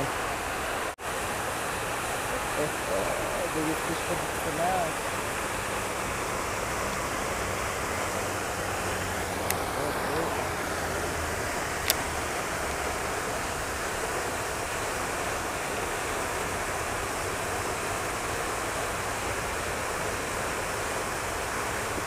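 Steady rush of water from a pond's spray fountain. Two faint clicks come in the middle.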